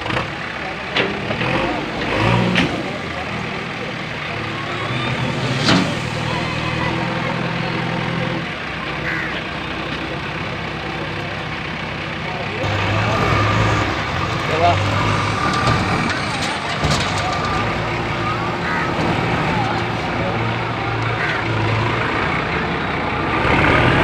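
Diesel tipper truck's engine running steadily while its dump bed comes down after tipping gravel. The engine note changes about halfway through.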